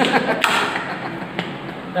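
Steel crowbar prying rotted wooden wall trim off a wall: a sharp crack about half a second in and a lighter knock about a second later.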